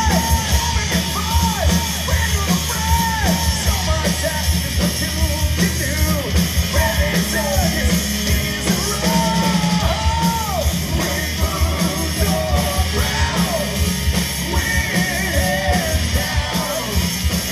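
Heavy metal band playing live: a singer's voice sung and shouted over distorted electric guitars and fast, dense drums.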